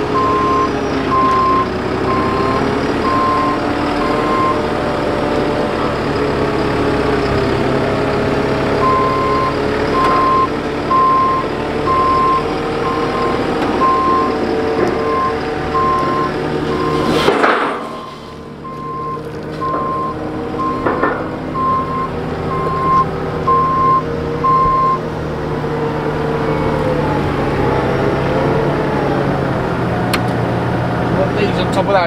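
JCB AgriPro telehandler's diesel engine running with its engine speed rising and falling, and the machine's reversing alarm sounding an even, repeated beep at the start and again through much of the middle. A brief loud rush cuts across about halfway through.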